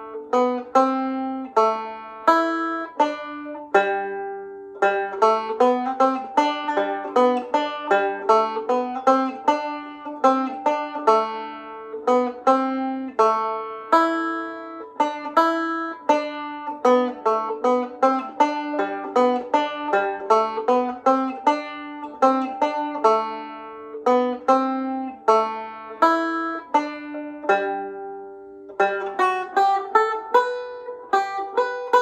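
Irish tenor banjo played solo, a picked single-note melody of quick notes with a steady dance pulse: a barndance in G.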